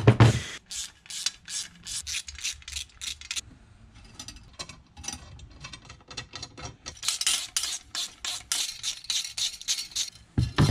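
Hand tools working on a steel bracket. One sharp crunch comes right at the start, then runs of short metal clicks, about three to four a second near the end, from a ratcheting hand driver turning bolts into riv nuts.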